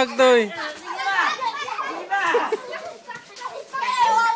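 Young children shouting and yelling as they play-fight, several voices at a high pitch.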